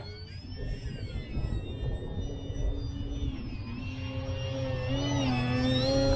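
Distant whine of a twin-motor electric foam RC plane's brushless motors and propellers overhead. The pitch steps up and down with throttle, and it grows louder toward the end, over low wind rumble on the microphone.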